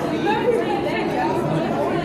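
Chatter of many voices at once, a steady babble of people talking with no single clear speaker.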